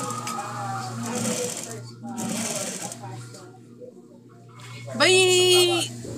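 Faint, indistinct talk over a video call with a steady low hum under it; a voice speaks up clearly about five seconds in.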